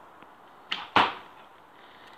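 An arrow shot from a bow: a short snap as the string is released, then about a quarter second later a louder hit as the arrow strikes a cardboard target, fading quickly.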